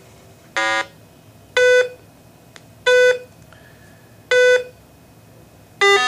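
RATH SmartPhone elevator emergency phone's self-test tones: a series of short electronic beeps about a second and a bit apart, the first of them buzzier than the rest. The buzzy "blat" marks a connection that is not hooked up, here the missing LED; the plain beeps mark connections that are working.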